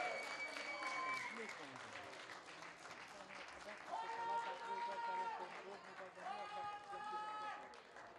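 Men's long drawn-out shouts, three in turn, over light scattered clapping: people cheering a goal just scored.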